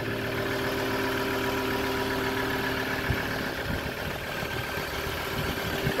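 An engine idling steadily, a low even hum, with a short low thump about three seconds in.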